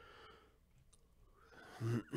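A person's soft exhale at the start, a breath in about a second and a half in, then a man's voice starts speaking near the end.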